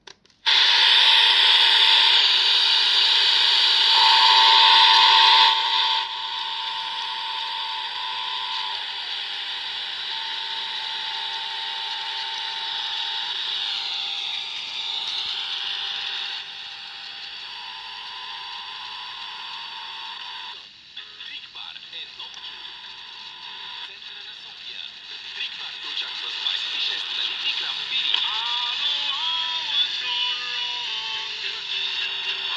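Sony Walkman WM-GX322's radio being tuned: loud static hiss with a steady whistle, a tone that sweeps down and back up partway through, and a voice on a station coming through near the end.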